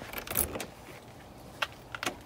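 Faint handling sounds: a brief jingling rustle about half a second in, then two sharp clicks near the end.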